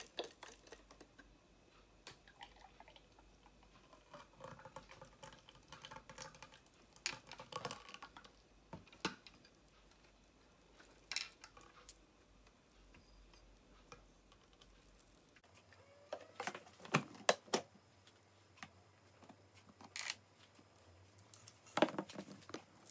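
Juice poured from a centrifugal juicer's plastic jug into a glass, with light clicks and knocks of the plastic parts being handled. Later a cluster of sharper plastic clicks and knocks comes as the juicer is taken apart.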